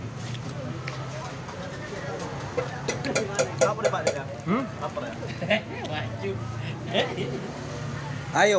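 Indistinct background voices of a group at a meal over a steady low hum, with a cluster of light clicks a few seconds in.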